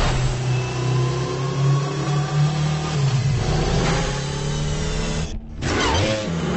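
Light cycle speeding: a steady synthetic engine hum with slowly rising whining tones. It cuts out suddenly for a moment near the end, then comes back.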